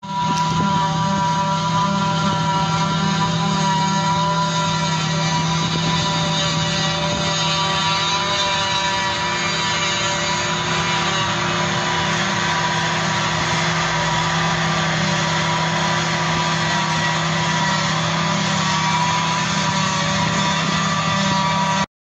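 John Deere self-propelled forage harvester chopping grass for silage, its engine and chopper running at a steady, even load, with a constant whine over the machine noise. The Praga V3S truck taking the chopped grass runs alongside. The sound cuts in suddenly at the start and holds steady throughout.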